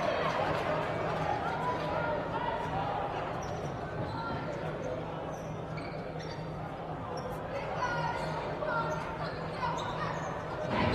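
A basketball dribbled on a hardwood gym court, with players' and spectators' voices faint in the background of the hall.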